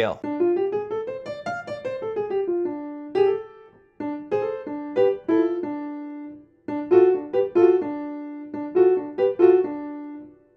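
Piano playing blues licks built on the D blues scale, right-hand figures over left-hand chords, in three short phrases with brief breaks about four and seven seconds in.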